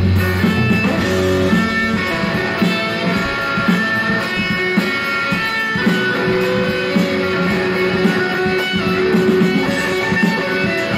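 Electric guitar playing a riff of picked and strummed notes, several of them held and ringing.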